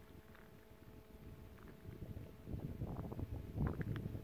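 Wind rumbling on the microphone, faint at first and turning gustier about two and a half seconds in.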